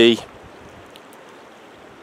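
Low, even outdoor hiss of wind and small waves lapping on a wind-rippled lake shore.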